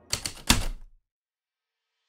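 Typewriter keys striking a few times in quick succession within the first second, the last strike the loudest, with a low thud.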